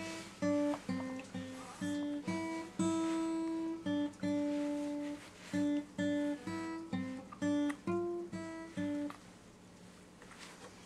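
Acoustic guitar playing a slow melody of single plucked notes, some held for about a second, stopping near the end.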